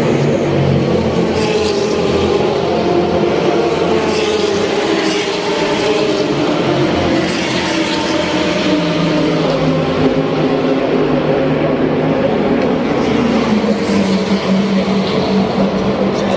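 Race car engines on the circuit, a continuous loud drone of several engines at once, their pitch drifting slowly up and down as cars pass.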